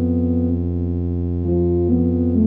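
Solo tuba score played back as synthesized sound by MuseScore notation software. A low note is held steady under a slow melody line that steps to a new note a few times, most clearly in the second half.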